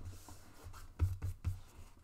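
A folded paper booklet handled on a tabletop: paper rubbing and rustling under the hands, with a few soft knocks against the table about a second in.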